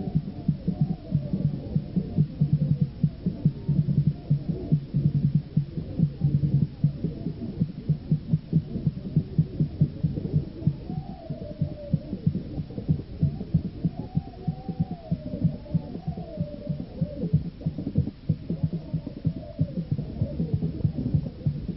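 Percussive music: fast, dense drumming with a higher melody line sliding up and down above it.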